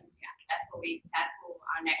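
Indistinct speech: people talking at a meeting table, with words too unclear for the recogniser apart from a final "next".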